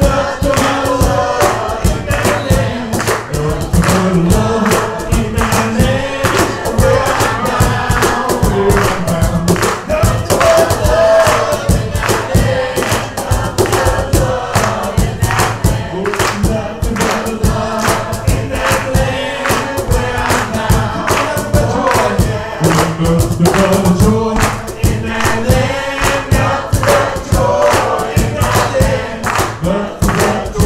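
A live worship song: a band playing with a steady beat while the congregation sings along together.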